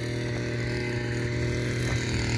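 An engine running steadily at constant speed: an even, low hum with overtones, without revving.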